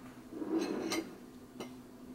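Light handling noises as a glass of milk is picked up from a table: a short scrape about half a second in, then a few small clicks and taps, over a faint steady hum.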